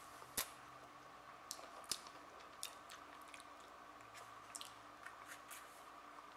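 Quiet sipping through plastic straws from lidded mason jars, with faint scattered clicks and ticks.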